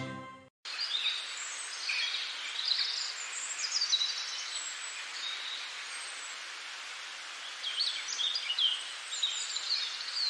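Outdoor nature ambience: many small birds chirping and calling in short high notes over a steady soft hiss, starting just after a burst of music cuts off at the very beginning.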